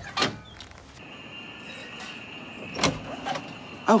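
A front door being opened: a sharp clack of the latch near the three-second mark, over a steady faint background hum.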